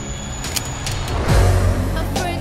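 Trailer music and sound design: a noisy rising whoosh that lands on a deep, sustained bass hit about a second and a half in.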